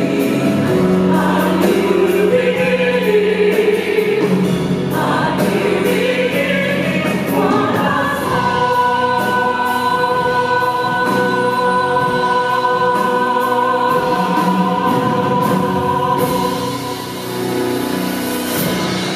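Choir and soloists singing with instrumental accompaniment, settling about halfway through into one long held closing chord that fades near the end.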